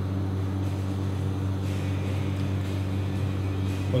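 A steady low machine hum with a faint hiss, unchanging throughout.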